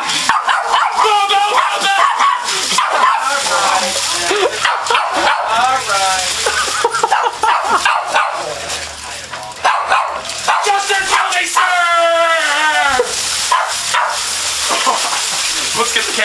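Small dog barking and yipping again and again at a person in a tin-foil costume, over the constant rustle and crinkle of the foil as he moves.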